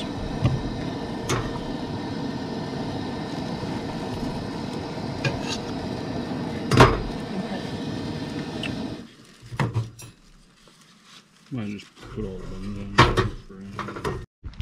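Propane camp stove burning under a pan with a steady hiss, with metal fork and plate clinks and one louder clatter about seven seconds in. The hiss cuts off abruptly about nine seconds in, as if the burner were shut off.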